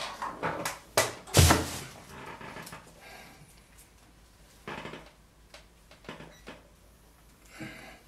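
Round wooden sculpture turntable being turned by hand: a few wooden knocks and clatters, the loudest about a second and a half in, then fainter handling sounds near five seconds and near the end.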